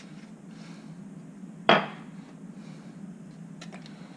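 A single sharp knock of a bottle being set down on a kitchen counter about two seconds in, with a few faint clicks near the end, over a low steady hum.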